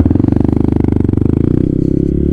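Motorcycle engine pulling away from a standstill, its revs climbing in a fast, even pulse. The note changes about one and a half seconds in.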